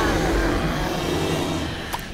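Cartoon rage sound effect: a loud, steady rumbling roar under an enraged witch character's fury, ending in a short click.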